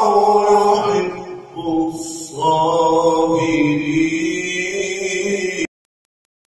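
A man's voice reciting the Qur'an in drawn-out melodic chant, holding long ornamented notes, easing off briefly about a second and a half in and then picking up again. It cuts off suddenly near the end.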